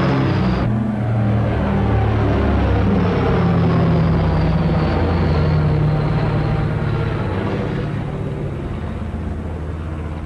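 Steady drone of a Short Sunderland flying boat's radial piston engines in flight, easing off slightly near the end.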